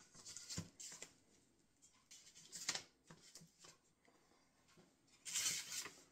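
Small handling sounds of tools and parts on a workbench: a few light knocks and scrapes, then a louder, longer rustle about five seconds in.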